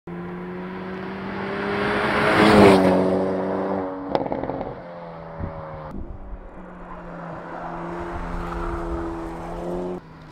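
Hyundai Elantra N's 2.0-litre turbocharged four-cylinder driving past under load, its note swelling to a peak about two and a half seconds in and then fading, with a single sharp pop about four seconds in. After a cut about six seconds in, the engine holds a steady note as the car approaches.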